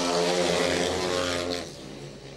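Speedway motorcycles with single-cylinder 500 cc engines racing past close by at full throttle, loud for about a second and a half, then fading away.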